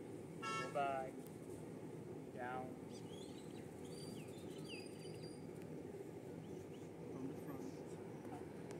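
Steady outdoor background noise with two short pitched calls, the louder one about half a second in and a weaker one about two and a half seconds in, followed by faint high bird chirps.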